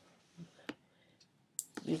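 A single sharp mouse click, about two-thirds of a second in, against quiet room tone. It is a pen-tool anchor point being placed while tracing.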